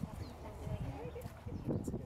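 Indistinct chatter of several people talking in the background, with a few soft low thumps in the second half.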